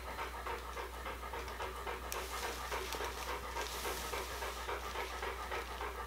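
Quiet, quick, rhythmic panting breaths over a low steady hum.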